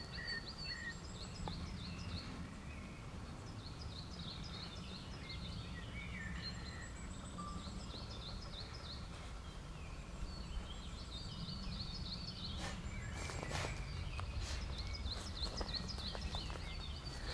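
Small songbirds singing in woodland, with short high phrases of rapid notes repeated again and again, over a low rumble of wind on the microphone. A few sharp clicks come near the end.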